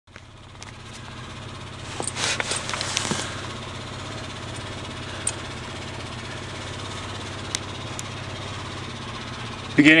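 Vehicle engine idling steadily, with rustling and knocks from the camera being handled about two to three seconds in and a few single clicks later on.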